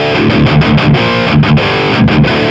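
Distorted electric guitar played through the Flamma FX200 multi-effects unit on its Friedman amp model, a heavy rock rhythm tone. The riff mixes ringing chords with quick, choppy strums.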